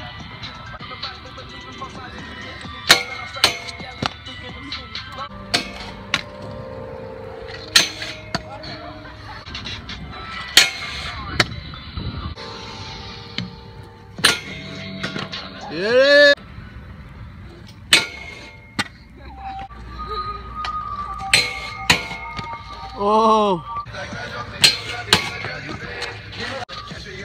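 Stunt scooters landing on and grinding a metal flat rail on concrete: a dozen or so sharp clacks and clangs of deck and wheels striking the rail and ground, spread through, over background music.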